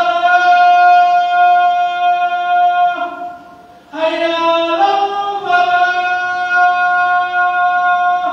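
A man's voice calling the adhan, the Islamic call to prayer, in long drawn-out melodic notes. One held phrase ends about three seconds in, and after a short breath the next phrase begins, stepping up in pitch and then held again.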